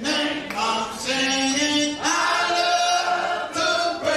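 Voices singing together in long held notes, the sound of a church choir.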